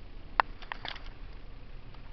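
Low, steady road and engine noise inside a slowly moving car, with one sharp click about half a second in and a few fainter clicks just after.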